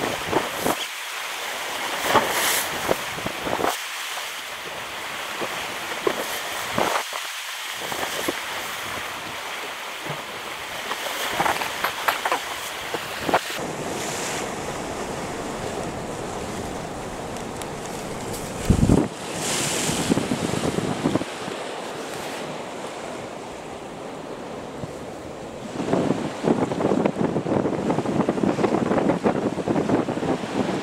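Sea surf washing and breaking on rocks, a steady rushing wash, with wind gusting on the microphone; the wind buffeting grows heavier near the end.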